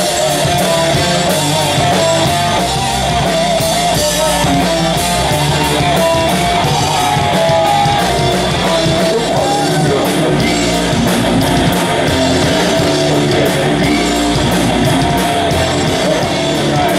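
Live metal band playing loud: electric guitars with a wavering melodic lead line over bass and rapid drumming on a drum kit.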